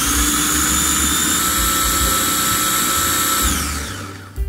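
Small electric food processor motor whirring at full speed as it purées cilantro with lime zest and lime juice into a paste. Its whine holds steady, then winds down in pitch over the last half second as the lever is let go.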